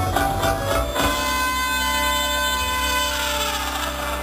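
Amplified band music: a rhythmic strummed passage for about a second, then a long held chord that rings on and slowly fades.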